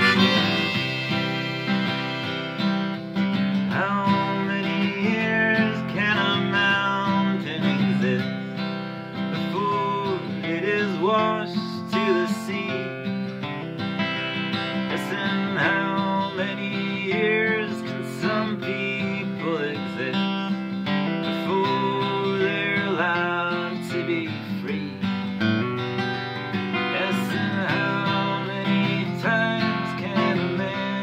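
Acoustic guitar strummed in a steady rhythm under a wavering melody line.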